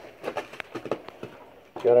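A quick, irregular run of light knocks and creaks in the first second, from footsteps on old wooden floorboards.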